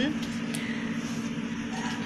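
A pause between words filled by a steady low hum with an even hiss over it: background noise from an unseen source.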